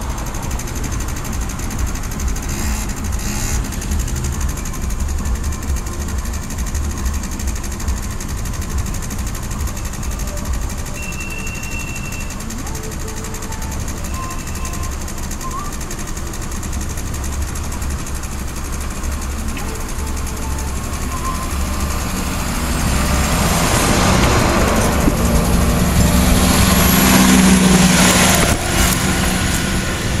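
Vogtlandbahn diesel railcar approaching on the tram-train tracks over a steady low rumble, its engine and wheels growing louder in the last several seconds as it comes close, then easing off just before the end.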